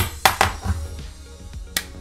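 Coin toss with a Canadian two-dollar coin: a sharp click as it is flicked, then a few lighter clicks as it is caught in the hands, over background music.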